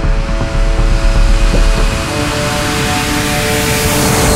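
Music with sustained chords, mixed with jet airliner engine noise that builds through the second half and is loudest near the end, like a jet passing close.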